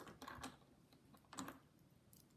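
Faint light clicks of small plastic LEGO figures being handled and set down by hand, a few at the start and another cluster about one and a half seconds in.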